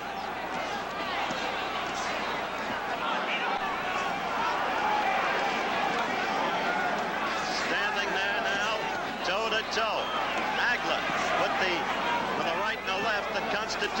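Arena crowd at a boxing match shouting and cheering, many voices overlapping into a dense din with single shouts standing out, growing louder a few seconds in.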